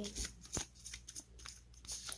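Tarot cards being shuffled by hand: a quick, irregular run of crisp card flicks and rustles.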